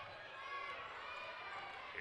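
Faint live court sound during basketball play: low chatter of voices from players and crowd in the hall, with a ball bouncing on the hardwood.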